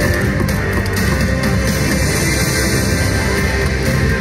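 Loud, continuous music with a heavy rock-like sound, playing without a break from a slot machine during its free-spin bonus round.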